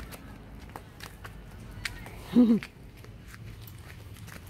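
Footsteps of a person hopping along a hopscotch grid on concrete pavement: scattered light taps and scuffs of shoes. A brief voiced sound about halfway through is the loudest moment.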